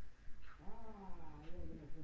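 A man's drawn-out wordless hum, about a second long, wavering up and down in pitch.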